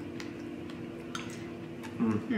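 A few faint, sharp clicks of metal spoons against a ceramic bowl as the smoothie bowl is scooped and eaten, over a low steady hum.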